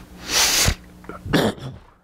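Two sharp, noisy bursts of breath close to a microphone, like a man sneezing: a loud one about half a second in and a shorter one about a second and a half in.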